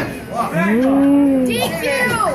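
One person's long drawn-out yell from the crowd, its pitch rising and then easing down, followed by shorter calls near the end.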